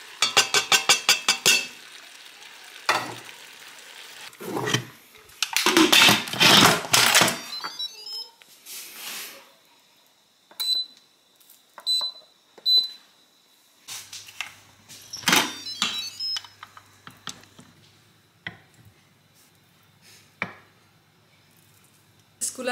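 A metal ladle scraping and clattering in a stainless steel Instant Pot insert, then three short high beeps from the Instant Pot's control panel as its buttons are pressed. After that a faint low hum sets in, with scattered knocks and taps.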